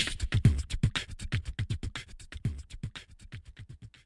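Human beatboxing: a fast run of clicks with low kick-drum-like thumps, fading steadily away as the track ends.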